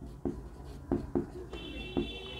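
A pen drawing on a writing surface: a few short, separate taps and strokes as a diagram is sketched.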